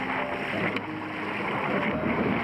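Sea kayak paddled through choppy open sea: water splashing off the paddle blade and hull, with wind rushing on the microphone.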